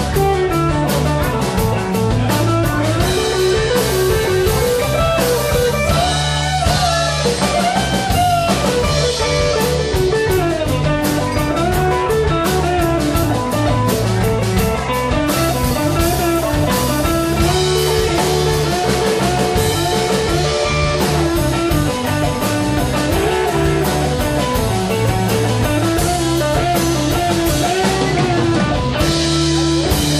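Live blues-rock band playing an instrumental passage: electric guitars and drum kit with keyboard, a melodic lead line winding up and down over a steady beat.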